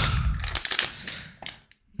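Foil trading-card pack wrapper crinkling and rustling in the hands, fading away about a second and a half in, then a brief dead silence near the end.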